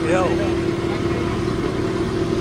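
River tour boat's engine running at a steady pitch, a constant hum over an even rushing noise.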